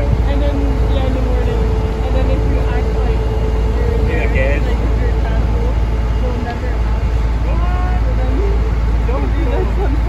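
A riverboat's engine running steadily: a deep, even rumble with a constant hum over it, while voices chatter indistinctly in the background.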